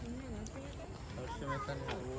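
Faint voices of people talking, with a couple of light clicks.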